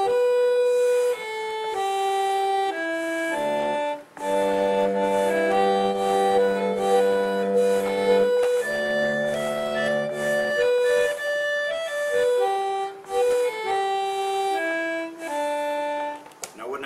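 Melodeon from the 1830s–40s, a reed organ that works on pressure rather than vacuum, playing a tune: a single-note melody, then fuller held chords with lower notes from about four to ten seconds in, then the melody again. Its bellows leak air a lot, so it takes heavy pumping.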